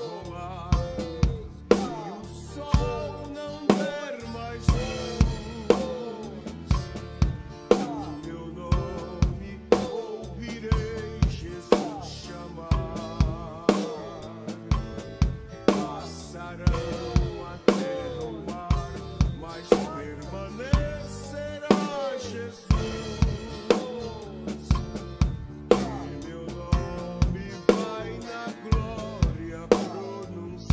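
Acoustic drum kit playing a steady groove of bass-drum and snare strokes with accented hits, played along with a melodic hymn backing track.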